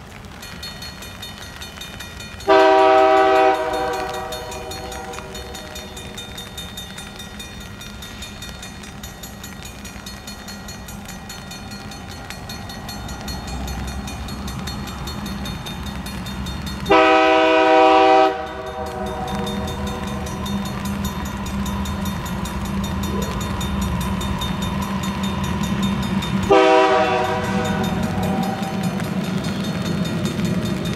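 A Canadian National freight train's diesel locomotive sounds its air horn three times as it approaches, each blast a chord of several notes, the middle one the longest. Beneath the horn, the rumble of the diesels grows steadily louder.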